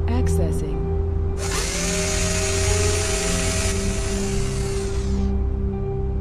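A whirring machine sound effect: a hiss with a whine that rises and then holds steady for about four seconds before fading out. It plays over background music with a steady held tone, after a few short electronic chirps.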